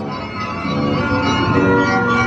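Music playing from a coin-operated kiddie carousel ride while it turns: a melody of held notes.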